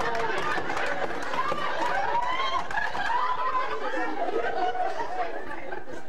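Indistinct talking and chatter from several voices, with no clear words.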